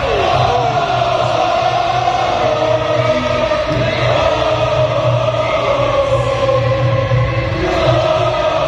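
A large crowd of football supporters singing a chant together in unison, one loud sustained melody carried by many voices.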